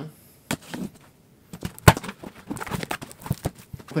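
Cardboard box flaps being pulled open, with one sharp snap just before two seconds in followed by a run of crackling and rustling cardboard.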